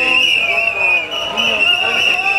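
A long, steady, high-pitched whistle blast held without a break, with faint voices of marchers underneath.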